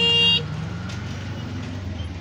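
A vehicle horn sounds for a moment at the start and then stops. Street traffic follows, with a motor vehicle's engine running close by.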